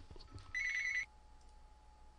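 Telephone ringing: one short electronic trill, about half a second long, starting about half a second in.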